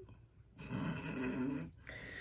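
A person's raspy, breathy exhale lasting about a second, followed by a shorter one near the end.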